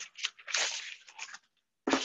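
Mealworms and their dry sawdust bedding poured from a container onto a paper towel: irregular scratchy rustling and crunching in short bursts, with a brief pause near the end.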